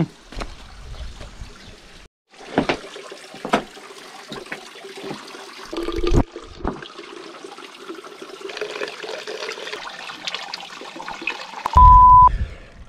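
Water from a stone fountain running and splashing into a plastic cycling bottle as it is filled, with a few knocks of the bottle and its handling. A short beep sounds near the end.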